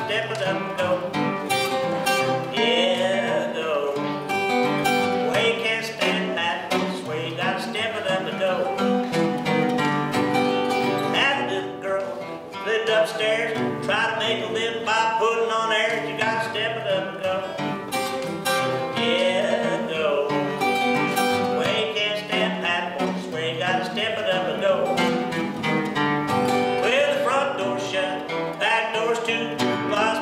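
Acoustic guitar fingerpicked in Piedmont blues style, a steady alternating-bass pattern with melody notes and occasional bent notes on top, played without a break.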